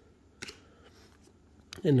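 Baseball trading cards being flipped and slid in the hand, with one short sharp click about half a second in.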